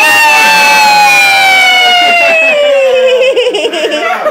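A child's loud, long, high-pitched squeal, held for about three seconds and slowly falling in pitch, breaking into giggling near the end.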